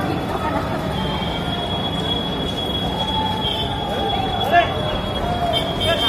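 Busy pedestrian street ambience: indistinct voices of passers-by over general street noise, with a thin steady high-pitched tone that starts about a second in. A brief, louder sharp sound stands out a little past halfway.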